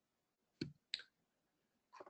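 Two faint, short clicks about a third of a second apart, with near silence around them.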